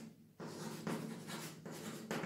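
Chalk writing on a blackboard: a run of short strokes with brief gaps between them, and a short pause just after the start.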